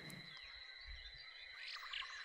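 Faint background ambience of frogs and insects: a thin, steady high trill with a few short chirps.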